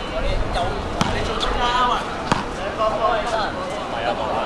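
Basketball bouncing on an outdoor court, two sharp bounces a little over a second apart, with players' voices calling out.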